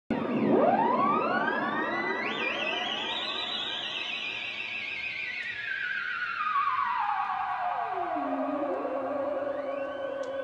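Electronic intro sound effect: a cluster of synthesized tones sweeps rapidly upward in the first two seconds, wavers briefly, then glides slowly and steadily down in pitch.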